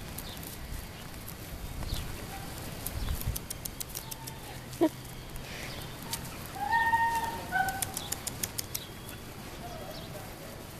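Crunching and ticking of footsteps on dry grass, with one sharp click about five seconds in. A few short, high whining calls come from an animal around seven seconds in.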